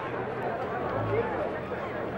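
Indistinct murmur of an audience: several voices talking at once, none clearly in front.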